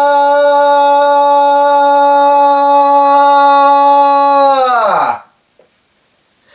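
A man singing a cappella, holding one long, steady note; about five seconds in, his voice slides steeply down in pitch and stops.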